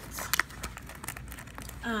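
Light clicks and rustles of hands handling a new wallet and phone case with their tags, the sharpest clicks about a third of a second in.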